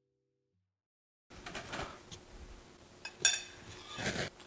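Silence for about the first second, then faint handling sounds and a metal spoon clinking once, sharply, against a ceramic plate about three seconds in.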